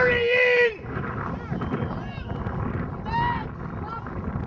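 Sideline spectators' voices: a loud, held shout right at the start and a short call about three seconds in, over steady crowd chatter.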